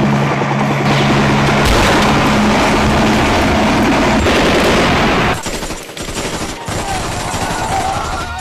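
Film sound effects: a loud, dense explosion roar over a steady low helicopter drone for about five seconds, then dropping away to scattered gunshots.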